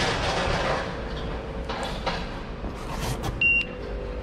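Steady low rumble of a delivery step van, with footsteps and knocking as someone climbs aboard into the cargo area. About three and a half seconds in comes a single sharp metallic clank with a brief ring.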